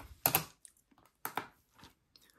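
A few small plastic clicks, in pairs with pauses between: the hinged lid of a digital pocket scale being opened and its buttons pressed.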